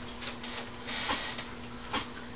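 Handling noise from keyboards and gear being adjusted on a table: two short bursts of hissy rustling and a click near the end, over a steady low hum.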